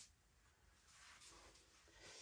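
Near silence: faint room tone at a video edit.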